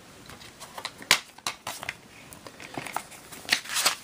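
Plastic DVD case being handled and opened, a string of sharp clicks and snaps, the loudest about a second in, with more near the end.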